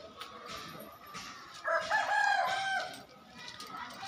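A rooster crowing once, starting about a second and a half in and lasting about a second.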